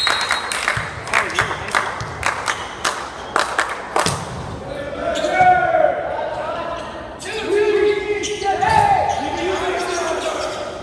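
A volleyball smacking in an echoing gymnasium: a quick, irregular run of sharp slaps with the strongest hit about four seconds in. After that, players' voices call out.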